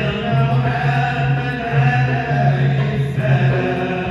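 Moroccan Sufi madih and sama' ensemble: several men chanting devotional verse together in long held notes over a steady low drone, with light regular frame-drum taps.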